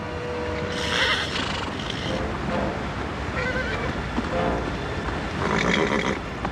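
Horses whinnying several times over a steady low rumble.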